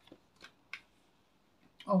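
Tarot cards being handled and laid on a table: a few soft card clicks in the first second, then a woman's voice saying "okay" near the end.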